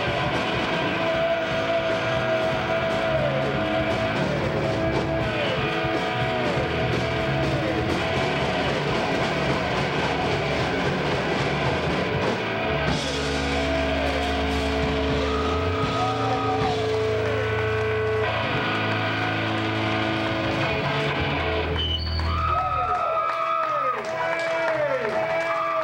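Live rock band playing electric guitar, bass guitar and drums, with sustained and repeatedly bent guitar notes; the bass stops about a second before the end.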